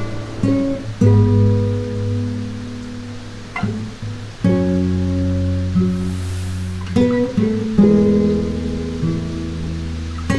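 Acoustic guitar fingerpicked in a slow chord progression: each chord is plucked and left to ring, with a new chord every second or few seconds.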